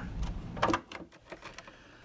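Faint handling noise: a few light clicks and rubs in the first second as a screwdriver is set against a screw in a plastic housing, then near quiet.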